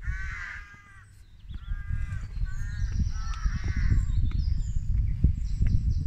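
A crow cawing repeatedly, about four caws in the first four seconds, over a low, irregular rumble that grows louder after a second and a half.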